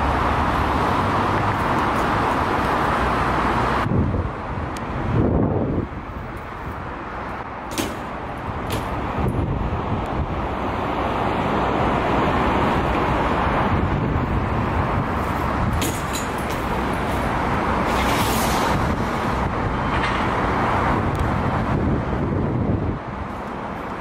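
BMX bike tyres rolling over stone pavement and cobbles, a steady loud rumble with a few short sharp knocks. The rumble drops back for a couple of seconds about four seconds in.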